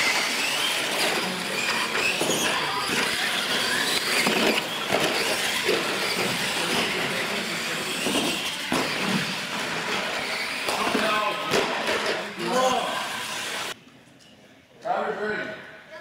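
Two electric R/C monster trucks racing flat out, motors whining up in pitch and tyres rushing over a concrete floor, with sharp knocks as they hit the wooden jump ramps; voices shout over it. The sound cuts off suddenly about two seconds before the end.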